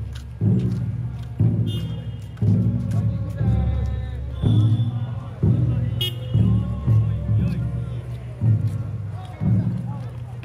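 A large taiko drum beaten at a slow, steady pace, about one stroke a second, each stroke ringing low before the next. Voices are mixed in.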